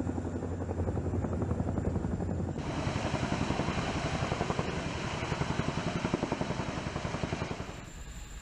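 CH-47 Chinook tandem-rotor helicopter hovering with a sling load, its rotor blades beating in a fast, steady rhythm over a low hum. About two and a half seconds in, the sound turns brighter and more rushing.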